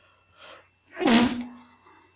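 A man sneezes once: a faint breath in, then a single sharp burst about a second in with a short voiced tail.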